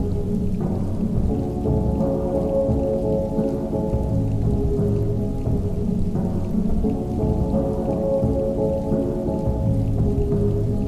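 Muffled music, its highs cut off, with sustained tones shifting every second or two, playing over a steady rain sound.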